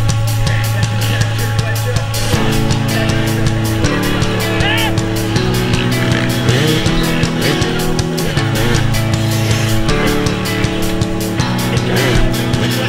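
Rock music with a steady drum beat, laid over the sound of an enduro motorcycle's engine revving as it is ridden.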